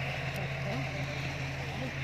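Excavator's diesel engine running at a steady, even drone, with faint voices of a crowd underneath.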